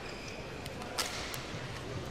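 Badminton racket striking the shuttlecock with a single sharp crack about a second in, followed about a third of a second later by a lighter click of the return, over the low hush of an arena crowd.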